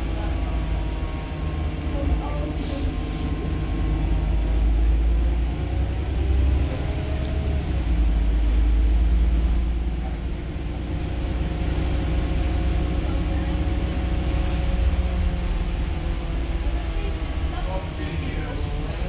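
Interior running noise of a Volvo B8RLE diesel bus heard from the rear of the saloon: a steady low rumble with a faint whine from the engine and driveline that rises and falls in pitch.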